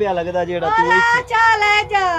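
A high-pitched voice singing short sliding phrases.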